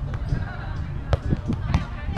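A volleyball being struck by hand: one sharp slap about a second in and a lighter one shortly after. Faint players' voices carry across the sand courts behind it.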